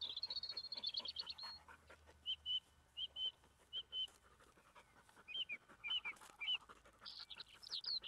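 Small songbirds singing outdoors: a fast trill at the start, then short chirps repeated under a second apart, and a quick run of falling notes near the end.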